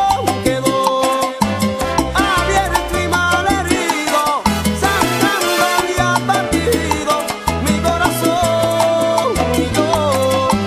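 Salsa music from a Cuban dance band recording: busy percussion over a stepping bass line, with melodic lines playing above.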